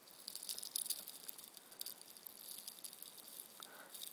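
Faint, scattered light clicks and rattles over a low hiss.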